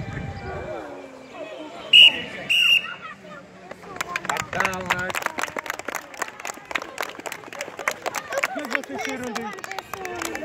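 Two short blasts on a sports whistle about two seconds in, then a group of children clapping, with chatter and shouts over the applause.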